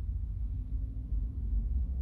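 Steady low rumble of background noise, with no distinct events.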